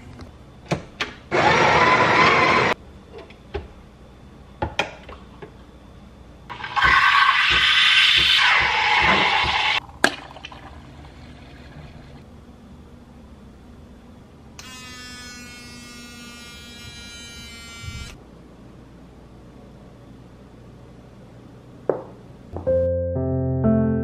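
Home espresso machine at work: two loud hissing bursts, the second lasting about three seconds, then a steady buzzing of the machine running for about three seconds, with clicks and knocks of cup and parts being handled in between.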